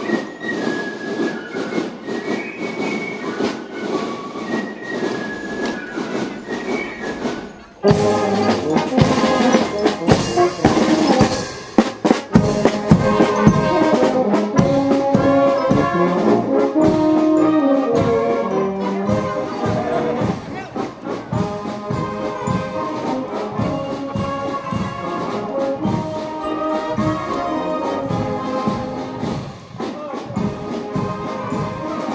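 A marching brass band with trumpets, trombones and tuba playing a march. About eight seconds in it becomes abruptly louder and fuller, with a steady drum beat under the brass.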